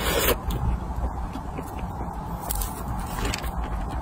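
Close-miked eating sounds of soft crepe cake: a short burst right at the start as the spoon leaves the mouth, then soft, wet chewing clicks over a steady low hum.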